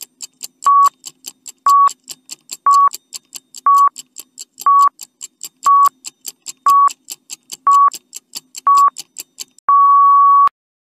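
Countdown timer sound effect: a short electronic beep once a second with quick ticks between them, about four ticks a second. It ends in one longer beep as the count reaches zero.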